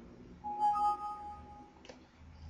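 Windows 7 alert chime: two rising bell-like notes that ring for about a second, sounding as a warning dialog pops up. A short click follows near the end.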